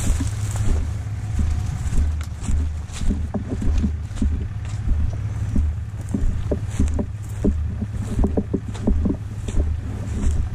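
Vehicle running with a steady low rumble as it moves over rough ground, with many short rattles and clicks, thickest in the second half, and wind buffeting the microphone.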